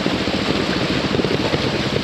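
Trials motorcycle engine chugging at low revs in rapid, even pulses as the bike climbs over wet rocks, with wind buffeting the helmet-camera microphone.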